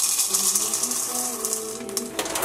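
Dry ring-shaped oat cereal poured from a box into a bowl: a dense rush of small clicks and rattles that thins out and stops near the end.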